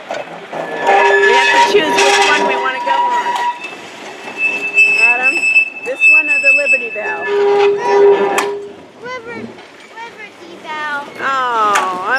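Steel wheels of an open trolley car squealing on the track as it rolls past, in two long, steady high squeals of a few seconds each, with people talking.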